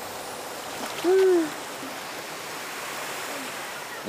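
Steady rushing background noise, with a short voiced sound from a person about a second in, its pitch rising and then falling.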